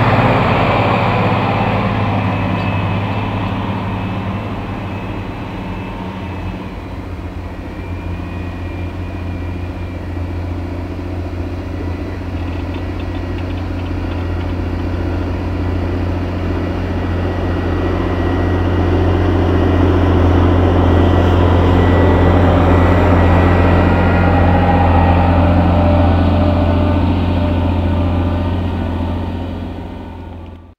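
Two tractors' six-cylinder diesel engines working under ploughing load with a steady low drone. A Massey Ferguson 7624 pulling a plough passes close at the start and fades. A Fendt 930 Vario then comes closer, growing louder over the second half, and passes before dropping away near the end.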